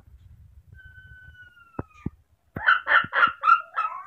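Newborn baby monkey crying for its mother. First comes one long, thin, whistle-like cry that slides slightly downward, then a quick run of about six loud, shrill cries near the end, with a few sharp clicks among them.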